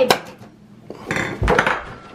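Dishes and cake containers handled on a table: a sharp clink at the start, then a short clatter with a dull knock about a second and a half in.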